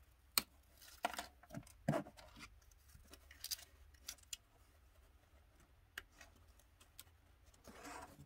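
Light clicks, taps and short scraping and rubbing sounds as thin wooden coffee stirrers are handled and pressed into place against a dollhouse wall. The sounds come in scattered single strokes, with the sharpest click about half a second in.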